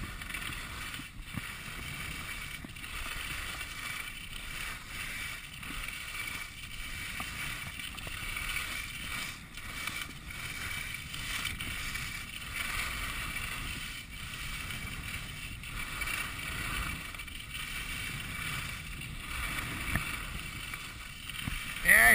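Skis sliding and scraping over groomed snow on a downhill run, a continuous hiss that swells and eases gently from turn to turn, mixed with air rushing past the skier's body-worn camera.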